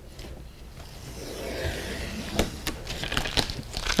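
Tape being peeled off the border of a watercolor on Mitz Terraskin paper: a rasping, tearing peel that grows louder about a second in, with a few sharp clicks near the end.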